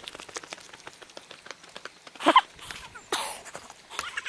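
Footsteps on bare rock and scrub: a quick, irregular run of small scuffs and crunches as people walk. A voice counts "three" about two seconds in and "two" near the end.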